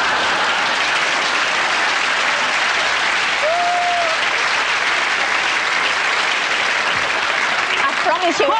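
Studio audience applauding steadily, with one short call rising and falling above the clapping about three and a half seconds in.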